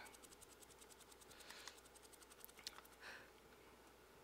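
Near silence: faint, rapid scratching of a paintbrush being dry-brushed over a painted foam claw for the first second and a half, then a few soft ticks.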